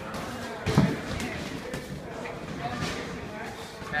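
Boxing sparring: a single heavy padded thud about a second in, among quieter scuffs and knocks of movement in the ring.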